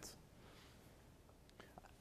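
Near silence: faint room tone, with a few faint clicks near the end.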